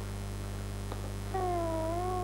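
Low steady hum of an old soundtrack; about a second and a half in, a single long pitched note starts, dips slightly in pitch, then holds steady.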